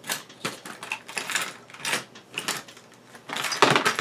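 Irregular clicks and rattles of a small drone frame and its parts being handled and fitted together, with a cluster of louder clatter near the end.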